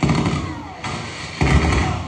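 Action-scene film soundtrack played back through a room's speakers: a loud, sudden thud right at the start, then a second, heavier and deeper one about one and a half seconds in.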